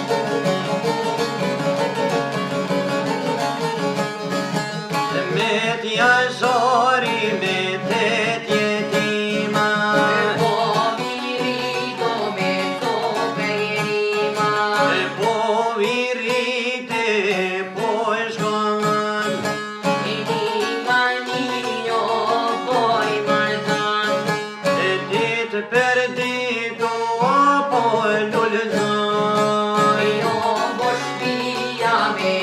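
Two çifteli, long-necked Albanian lutes, plucked in a steady, driving accompaniment. From about five seconds in, male voices sing an Albanian folk song over them in a wavering, ornamented line.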